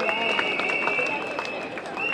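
People's voices over outdoor street noise, with a steady high-pitched whine that breaks off briefly near the end.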